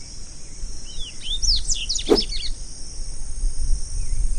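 Double-collared seedeater (coleirinho) singing one short phrase of quick, steeply rising and falling whistled notes about a second in, over a steady high insect hiss and a low rumble.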